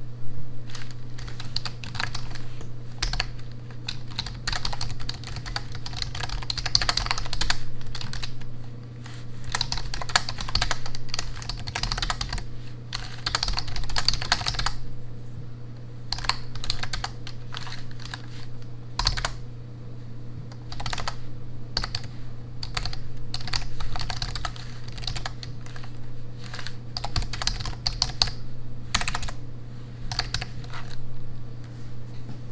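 Continuous touch-typing on a backlit full-size computer keyboard with low-profile keys: a dense, irregular patter of key clicks, with a short pause about halfway through.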